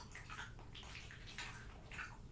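French bulldog chewing and smacking a mouthful of raw meat close to the microphone: a series of faint wet smacks, about five in two seconds.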